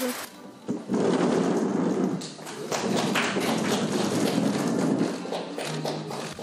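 Factory workshop noise: machinery running with many irregular knocks and thuds, starting about a second in and thinning out near the end into a low steady hum.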